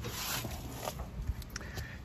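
Paper towel rubbed over the base of a generator's metal enclosure: faint rubbing, with a few light clicks later on.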